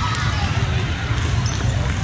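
Indoor volleyball rally on a hardwood gym court: dull thuds of the ball and players' feet over a steady hall rumble, with scattered spectator voices.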